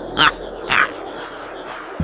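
Horror sound effect of a creature's short, high-pitched cries, two of them about half a second apart, over a faint eerie background drone.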